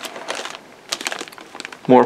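Clear plastic bag crinkling and rustling in irregular small clicks as a bagged sprue of plastic model-kit parts is handled and lifted out of its box.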